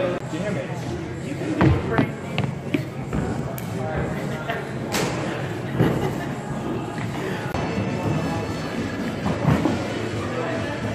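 Several sharp thuds of feet and a body landing on a sprung gym floor during a tumbling run, over background music and people talking.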